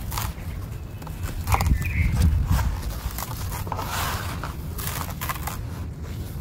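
Dry sand-cement being crushed and crumbled by hand in a plastic tub. Grit crunches and falls, with irregular sharp knocks from chunks pressed against the tub, over a low rumble.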